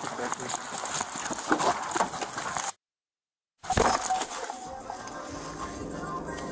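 Body-worn camera picking up the rustle and clinking of an officer's gear as he moves, with short shouts. The audio cuts out completely for nearly a second about three seconds in, then comes back with a loud thump and the quieter sound of a police SUV's cabin.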